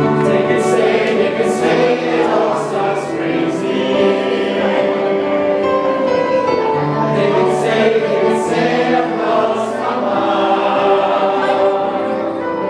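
A choir of men's and women's voices singing together in harmony, holding long sustained notes.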